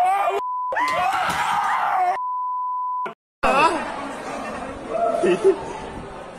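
Censor bleeps laid over a voice: a short steady beep, then a raised voice, then a longer beep of about a second that cuts off sharply. After a brief gap come talking and background noise.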